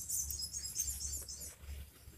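Small birds chirping in a quick, high twitter that fades out after about a second and a half, over a low rumble.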